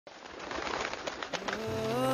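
Bird calls over a hissy background that fades in and grows louder. About a second and a half in, music enters with a sustained chord that slides up in pitch and swells.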